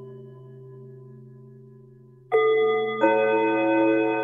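Bell-like chimes: ringing tones fade slowly, then a new cluster of bell tones is struck suddenly a little past two seconds in and another about a second later, ringing on.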